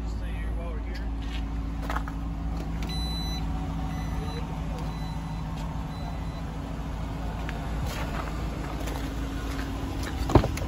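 A car engine idling steadily: a low, even hum with steady tones. Faint high beeps repeat about three to five seconds in.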